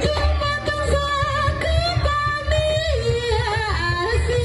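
Live jaranan accompaniment played through a loudspeaker system: a woman sings a high, wavering melody over a kendang barrel drum and a set of small kettle gongs.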